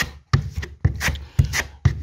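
A steel plasterboard joint knife scraping and spreading wet base-coat plaster, in a series of short, sharp scrapes.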